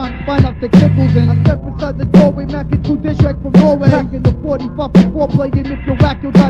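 Rapping over a hip hop beat with a bass line and drum hits.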